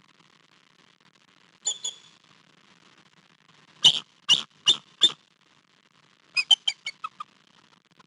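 Bald eagle calling: a pair of short high notes, then four loud, piercing notes about a third of a second apart, then a quick falling run of about seven shorter chattering notes.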